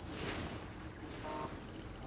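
Faint outdoor background noise, a low steady hiss, with a brief faint tone a little past the middle.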